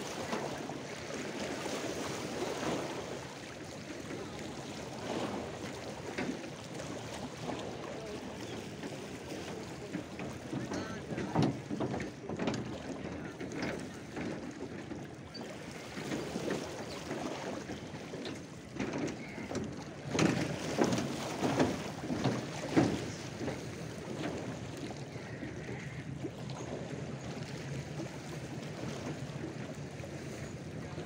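Small waves of lake water lapping and splashing in uneven surges. The loudest splashes come in two spells, one near the middle and one about two-thirds of the way through.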